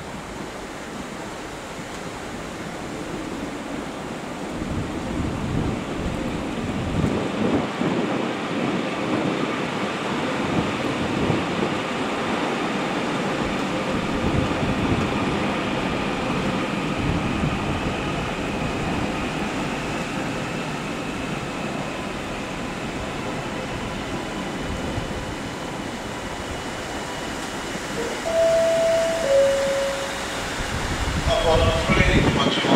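Passenger train moving through the station: the rumble and clatter of wheels on rail swell over the first few seconds, stay loudest for about ten seconds, then ease off under a faint steady whine. Near the end come two short tones, a higher note then a lower one.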